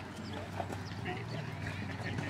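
Hoofbeats of a horse cantering on grass between show-jumping fences, under background voices and a steady low hum.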